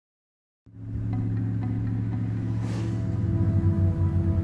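Low, steady drone of film-score music that starts abruptly out of silence about half a second in.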